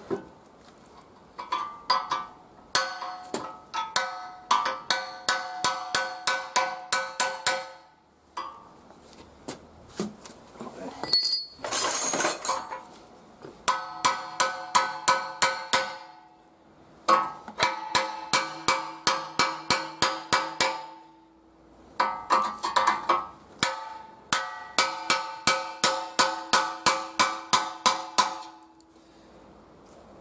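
Rapid hammer blows on the steel rear axle of a Volkswagen Polo, struck to drive out the corroded bushing ring that is only peened into its eye. Each blow rings with a clear metallic tone, and the blows come in four runs of about three a second with short pauses between, plus a brief harsher rasp about twelve seconds in.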